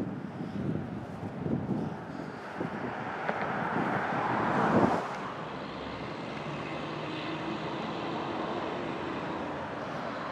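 A motor vehicle passing on the road, growing louder to about five seconds in and then dropping away, followed by a steady engine drone.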